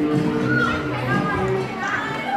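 Cha-cha dance music playing, with high-pitched shouts and cheers from spectators rising over it from about half a second in.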